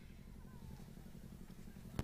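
Faint, steady low hum in the background, with a single short click at the very end.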